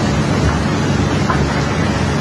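Steady low engine drone of barge machinery with an even rushing hiss over it, running without break.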